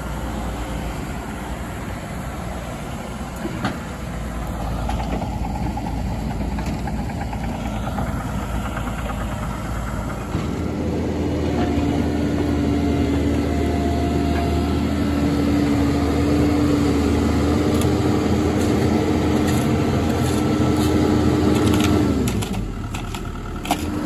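Bobcat E55 mini excavator's diesel engine running steadily. About ten seconds in, as the bucket digs into soil, a steady whine joins the engine and holds until it drops away near the end.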